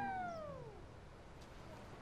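A single pitched sound effect sliding smoothly downward in pitch and fading out within the first second, the tail of the soundtrack's music cue.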